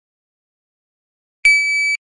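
Electronic shot timer start beep: one steady high-pitched tone about half a second long, coming about one and a half seconds in. It is the signal to draw from the holster.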